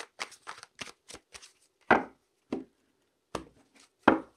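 Tarot deck being shuffled by hand: an irregular run of short card clicks and flicks, with a few louder slaps about two seconds in and again shortly after.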